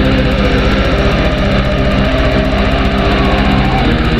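Black metal: a dense wall of distorted electric guitar holding sustained chords over a fast, evenly repeating drum beat.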